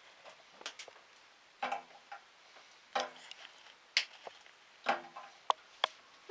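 A chocolate bar being broken into pieces by hand over a saucepan: a series of sharp snaps and clicks, about one or two a second.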